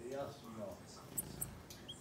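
Two very short, very high-pitched bird chirps a little past the middle, with a third short note near the end, from small birds at a forest feeder. A low voice is heard at the start.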